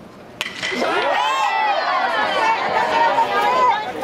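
A single sharp crack of a bat hitting a baseball, then many voices shouting and cheering together, loud and overlapping.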